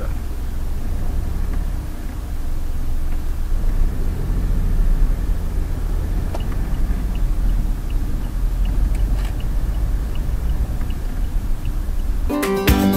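Low, steady rumble of a Mahindra TUV300's diesel engine and tyres heard from inside the cabin as the SUV pulls away slowly from a toll booth, growing a little after about two seconds as it gathers speed. Faint, evenly spaced light ticks run through the second half.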